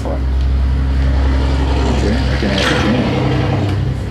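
A passing motor vehicle: a low rumble, with a rush of noise that swells and fades between about two and a half and three seconds in.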